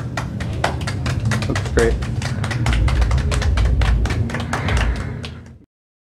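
A few people clapping, a quick irregular patter of claps with voices talking over it. It cuts off abruptly about five and a half seconds in.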